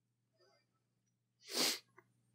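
Near silence, broken about a second and a half in by a single short, sharp burst of breath from a person, like a stifled sneeze.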